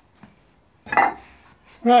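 A single sharp clink and clatter of a hard object being handled at a workbench, about a second in, ringing briefly as it fades, followed by a man saying "Right".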